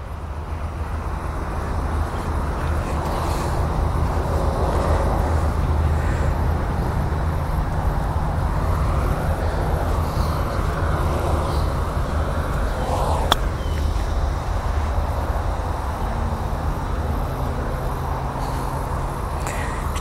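Steady low outdoor rumble throughout, with a single sharp click about thirteen seconds in: an iron striking a golf ball on a short pitch shot.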